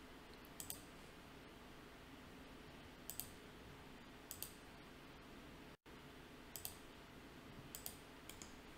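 Computer mouse button clicked five times at uneven intervals, each click a quick press-and-release pair, over faint room hiss.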